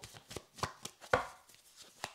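A deck of tarot cards handled and cut by hand: a quiet series of light, irregular taps and clicks of card edges, the loudest a little past a second in.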